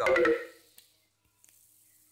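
A man's voice ending a word on one drawn-out syllable, then a pause of near silence for over a second.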